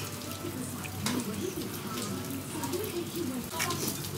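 Voices of other people talking in a busy open-air eatery, over a steady high hiss of background noise, with a couple of light clinks, one about a second in and one near the end.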